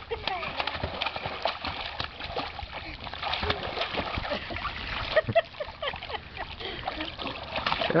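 Water splashing and slapping irregularly in a small inflatable kiddie pool as toddlers play in it, with brief child vocal sounds mixed in.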